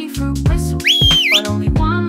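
A single whistle over bouncy children's-song backing music, about a second in: a quick rising note that holds, dips and sweeps up again, lasting about half a second. It is the song's call-back whistle from the parent fruit to the little fruits swimming in the pond.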